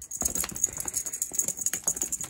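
Cat toy rattling and jingling in quick, irregular clicks as it is shaken.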